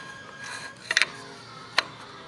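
Small hard plastic clicks as Glitzi Globes toy pieces are handled and pushed together: two quick clicks about a second in, then a single sharper click near the end.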